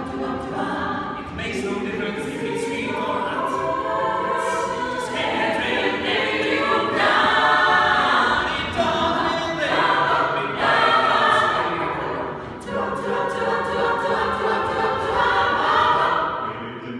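Mixed a cappella vocal ensemble of men and women singing in close harmony, with a crisp ticking beat running on top.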